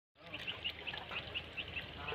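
A bird chirping faintly in short, high, evenly repeated notes, several a second, over low outdoor background noise.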